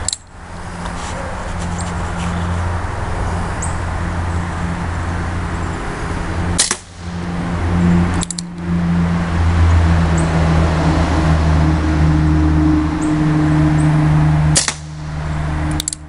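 Remington 1875 CO2 replica revolver firing wadcutter pellets: four sharp pops at uneven intervals, one near the start, two close together in the middle and one near the end. A steady low mechanical hum sits under the shots.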